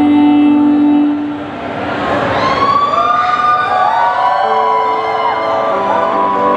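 Electronic backing track in a live set: held synth chords give way to a swelling noise sweep, then siren-like synth tones bend up and down in pitch about two seconds in before settling into new held chords.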